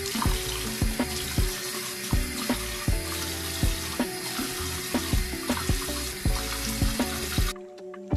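Bathroom waterfall faucet running into the sink as face soap is rinsed off by hand, in a steady hiss of water; the tap is shut off suddenly near the end.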